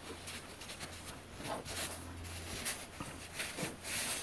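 Faint rustling and brushing of cotton fabric as hands smooth and tuck binding flat on a sewing machine bed, over a low steady hum.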